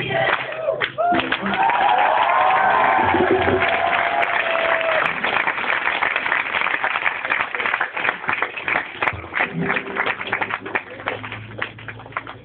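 A large crowd clapping and cheering, with a long drawn-out cheer in the first few seconds; the clapping thins out toward the end.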